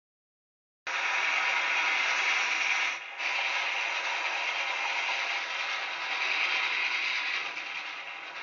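Steam locomotive running, a steady mechanical clatter and rattle of its wheels and running gear that starts abruptly just under a second in and dips briefly about three seconds in.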